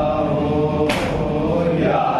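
A group of men chanting a Muharram noha together, voices held and wavering, with one sharp slap of hands on chests (matam) about a second in.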